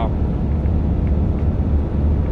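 Steady low drone of a van's engine and tyres heard from inside the cab while driving at a constant speed.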